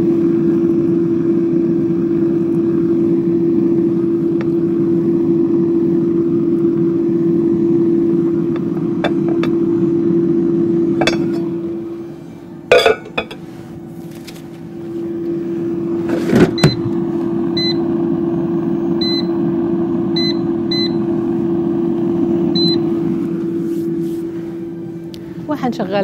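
Air fryer running with a steady fan hum that drops away for a few seconds midway. A few knocks come as the basket goes in, then its touch control panel gives about six short beeps while the timer is set.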